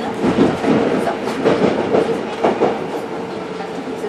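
Berlin U-Bahn subway car running, heard from inside the car: a steady rumble of rail noise with a steady hum through it.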